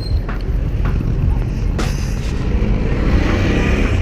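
Wind and road rumble on the camera's microphone from a bicycle being ridden through street traffic, a heavy low rumble with motor vehicles running nearby. A brief knock about two seconds in.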